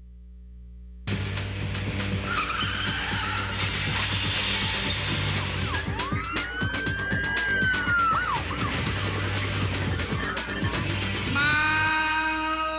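TV programme opening sequence: music mixed with car and tyre-skid sound effects, with one siren wail rising and falling in the middle. A quiet low hum comes first, the soundtrack cuts in loudly about a second in, and a held chord sounds near the end.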